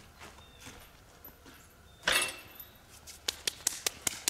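Footsteps crunching on dry leaves and ground, faint at first, with a louder rustle about two seconds in and quicker, sharper steps in the last second as the walker comes close.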